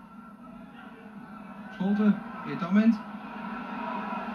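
Football stadium crowd noise on a TV broadcast, swelling steadily as an attack builds toward goal, under a commentator's voice.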